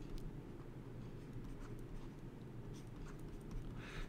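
Faint sounds of handwriting with a stylus on a tablet surface, a few light ticks and scratches, over a low steady room hum.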